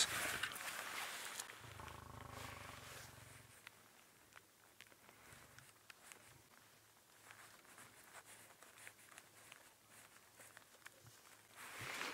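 A lion's low growl, faint and about two seconds long, starting a second and a half in.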